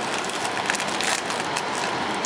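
Trading cards being gathered across a wooden tabletop and a foil booster pack being handled: light rustling and crinkling over a steady hiss.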